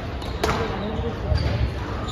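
Squash ball struck during a rally, a sharp smack about half a second in, over the murmur of spectators' voices in a large hall.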